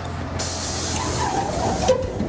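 Train sound effect: a steady low rumble, then a loud hiss of released air from the train's pneumatics. The hiss starts about half a second in and cuts off just before the end, with a faint wavering tone beneath it.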